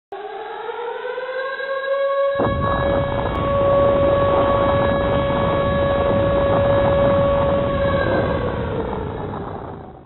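Air-raid siren sound effect winding up in pitch over the first two seconds, then holding one steady wail. About two seconds in, a loud rumbling noise starts suddenly and runs under it. Both fade out near the end.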